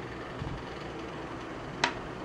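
Quiet room tone, then a single sharp click near the end as a small metal craft tool is set down on a table.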